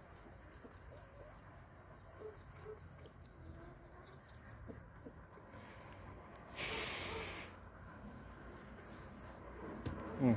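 Cloth rubbing on a small metal hive-number plate, scrubbing off old marker ink with spirit; faint and scratchy, with a louder rub of about a second about two-thirds of the way through.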